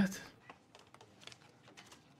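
Faint, irregular clicking at a computer, a few light clicks scattered through the stretch, as the bet is being placed.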